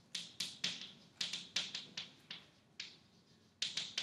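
Chalk tapping and scratching on a blackboard as a word is written, about a dozen sharp irregular strokes with a short pause near three seconds in.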